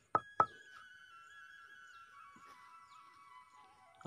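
Two quick knocks of a stone pounder on a flat stone grinding slab (sil-batta) as camphor is crushed, then faint music with held tones that step slowly downward in pitch.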